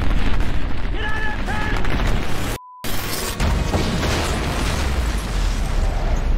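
Movie battle sound effects: a deep, continuous explosion rumble with crackling debris as an alien war machine on a rooftop is blown apart. A short shout comes about a second in, and the sound drops out briefly before a second blast.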